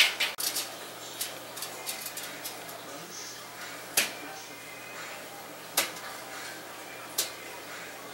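Hand tools handled while measuring and marking out on a carpeted floor: a quick cluster of sharp clicks and knocks at the start, then single sharp clicks about four, six and seven seconds in.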